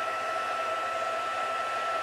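Handheld craft heat tool blowing steadily, a rushing air noise with a steady whine, as it melts gold embossing powder on a stamped card.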